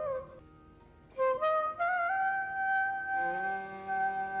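Carnatic bamboo flute playing an ornamented melody in raga Mohanam, its notes sliding and bending. A phrase ends just after the start, and after a short pause a new phrase begins about a second in. A steady low drone joins about three seconds in.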